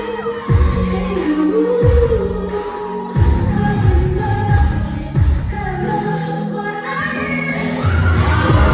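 Live K-pop song heard loud from the audience at a concert: a woman singing into a microphone over a backing track with a heavy bass beat.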